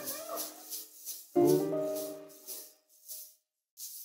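A live band's closing chord: a final chord is struck about a second and a half in and rings out, fading over about two seconds, over high rattling percussion strokes about four a second that stop as the chord dies.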